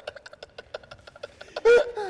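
Rapid light ticking, about nine clicks a second, then a short burst of a person's voice near the end.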